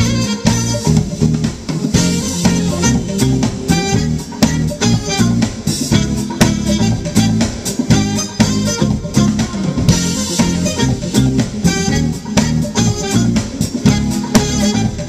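Live smooth jazz band playing: saxophone over drum kit, electric bass and electric guitar, with a steady beat.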